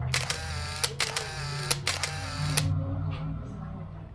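Camera shutter clicking in rapid bursts for about two and a half seconds as a photo is taken, then it stops.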